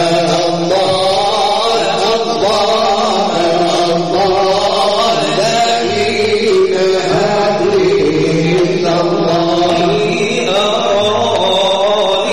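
Chanted vocal music: a voice carrying long, wavering, gliding melodic lines without a break.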